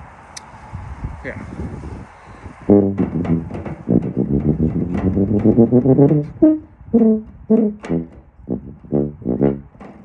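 E-flat tuba playing a practice phrase: from about three seconds in, a joined run of notes for about three seconds, then a string of short separated notes. It is a high, hard passage that the player says he just can't manage.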